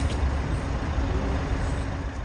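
Outdoor city ambience: a steady low rumble with a faint hiss above it, typical of street and traffic noise.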